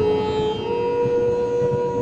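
Instrumental background music in an Indian classical style, holding one long note that steps up slightly in pitch about half a second in.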